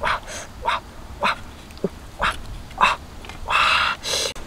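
A dog barking and yipping in a run of short sharp calls, with a longer, louder bark near the end.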